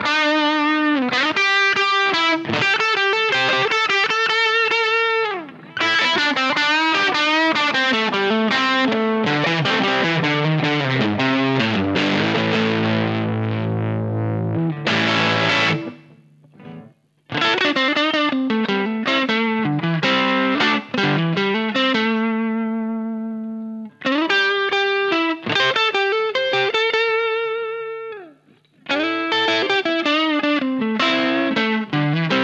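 Late-1980s Fender Japan Telecaster on its bridge pickup played through a Vox AC4 modded toward a Marshall Class 5 circuit (EL84 Class A, with an extra gain stage), recorded through an analog cab simulator: overdriven riffs and chords, a fat tone with a lot of mids and bass, the bridge pickup sounding almost like a humbucker or P90. Past the middle a chord is held and left to ring, followed by a short break. Near the end the playing stops briefly and resumes on the neck pickup with the amp's faux-Fender setting.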